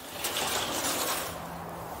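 Sliding glass patio door rolling open along its track, a steady rushing noise strongest in the first second, with a low rumble of wind on the microphone underneath.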